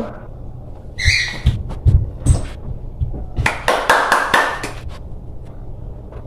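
Mouth noises of children eating gummy candy: slurping, sucking and chewing, with scattered clicks. Several low knocks in the first half and a longer rustle about four seconds in come from movement close to the microphone.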